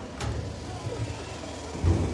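A pause between spoken lines, filled with low rumble and the faint voices of an open-air crowd, with a soft thump shortly before the end.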